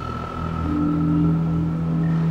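Dramatic background score: a low sustained synth drone with several held notes over a deep rumble, starting abruptly and building tension.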